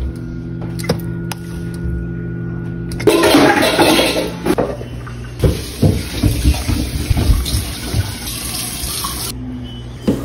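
A steady low hum, then from about three seconds in wet sloshing and gurgling as a thick butter chicken curry is stirred with a ladle in a steel pot on the stove.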